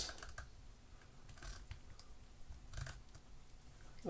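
A few faint, irregular clicks and taps as a 1Zpresso JX hand coffee grinder's aluminium body is handled and turned over.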